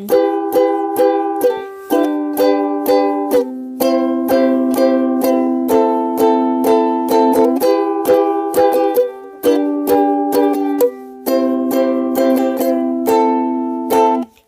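Instrumental music: a plucked string instrument, like a ukulele, strummed in a steady rhythm of about three strokes a second, the chord changing every couple of seconds, with no singing.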